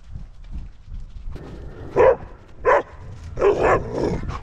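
Border collie barking: three short barks starting about two seconds in, the last one a little longer.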